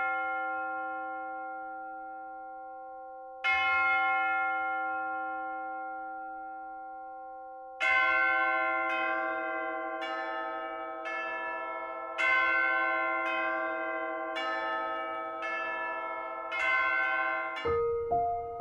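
A bell ringing with long, slowly fading strokes: one stroke rings on from just before, a second comes about three seconds in, then from about halfway a quicker run of strikes about once a second at changing pitches, like a chime playing a tune.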